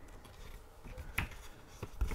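Faint handling of a paper booklet as it is opened and its pages leafed, with one short crisp click about a second in.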